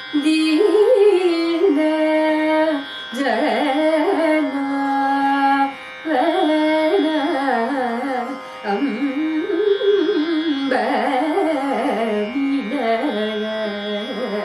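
A woman singing Carnatic classical music solo. Her voice holds notes and slides and oscillates around them in ornamented phrases, with short breaths between phrases.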